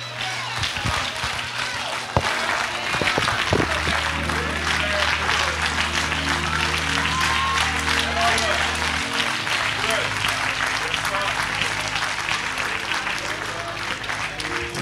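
Congregation applauding with voices in the crowd. About three and a half seconds in, a keyboard instrument comes in holding low sustained chords beneath the clapping.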